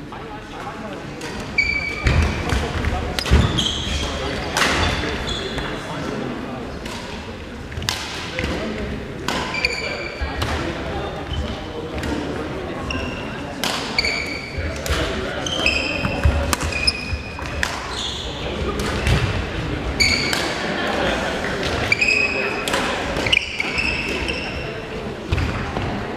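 Badminton rallies: rackets sharply hitting a shuttlecock, with short high squeaks of court shoes on a wooden sports-hall floor, all echoing in a large hall. Indistinct voices sound in the background.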